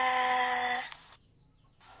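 A person's voice holding one long vowel at a steady pitch, cut off a little under a second in, followed by dead silence.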